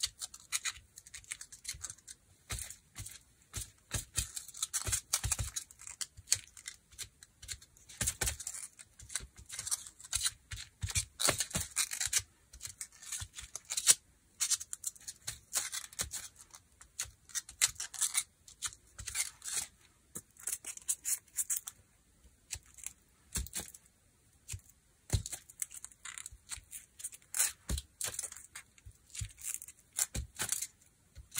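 Intermittent scratchy rubbing with short clicks as paint on a gel printing plate is pressed and dabbed by hand, with a quieter pause a little past the middle.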